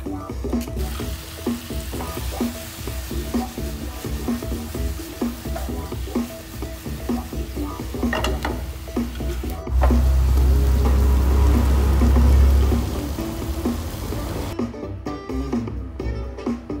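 Pieces of loach sizzling in a hot pan as they are stirred, with a clink about halfway through and a loud low rumble a little past the middle. The sizzling stops shortly before the end.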